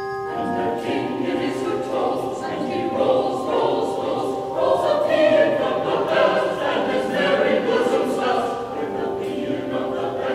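Mixed choir singing, coming in as the ringing of handbells dies away in the first half-second; the voices swell louder about halfway through.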